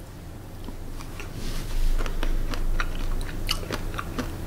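A person chewing a mouthful of rice topped with crunchy chili crisp, giving many small irregular crunches. It is a lot of crunch.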